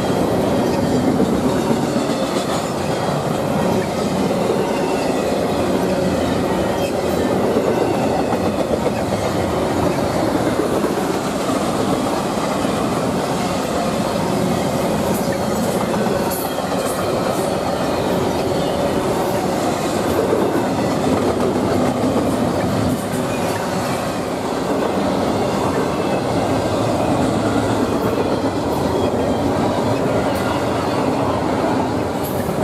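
Double-stack intermodal freight train passing close by: its steel wheels roll on the rails in a steady, loud rumble with metallic clatter.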